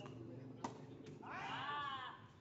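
Tennis ball struck by a racket with a sharp pop a little over half a second in, with a fainter second knock soon after. Near the end comes the loudest sound, a drawn-out high-pitched call that rises and then falls in pitch.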